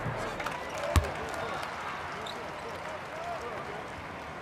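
Quiet basketball-arena murmur during a free throw, with one sharp thud of the basketball about a second in.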